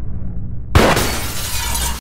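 A title-sequence sound-effect hit: a sudden crash with a deep boom about three quarters of a second in, its noisy tail held until it cuts off abruptly at the end, over a low rumbling bed.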